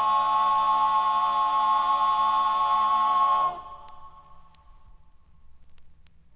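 Male barbershop quartet singing a cappella, holding one sustained closing chord that cuts off sharply about three and a half seconds in. After it only faint clicks and a low background murmur remain.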